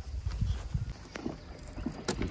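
Low, uneven rumble with a few faint clicks and taps.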